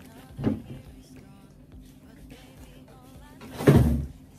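Handling and movement noise as a person gets up from a plastic chair and moves about with a shoulder bag: a thump about half a second in and a louder, short bump near the end, over faint background music.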